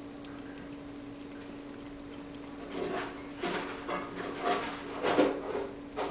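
Bambino Sphynx kittens scrabbling and pattering about on a wooden table and fabric mat, a string of irregular scuffs and small knocks that starts about halfway through and is loudest near the end. A steady low hum runs underneath.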